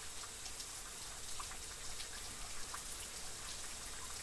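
Water dripping and trickling off a rock overhang: a faint steady patter with scattered single drips.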